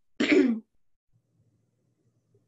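A person clears their throat once, a short burst shortly after the start.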